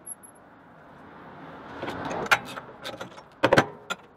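Hand-cranked roller bender working a steel rod into a curve: a rough rolling, grinding noise builds up, then several sharp metallic clanks and clicks, the loudest two a little past halfway and near the end.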